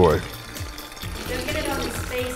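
Liqueur poured from a bottle held high, a thin stream splashing into liquid in a glass pitcher, under background music.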